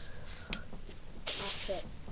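Low room noise with a single sharp click about half a second in, then a short breathy burst of a girl's voice near the end.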